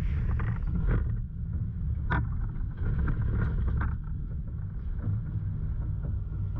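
Off-road 4x4's engine running low and steady as it crawls forward in four-wheel-drive low range, with a few sharp knocks and clunks from the vehicle working over the rocky trail.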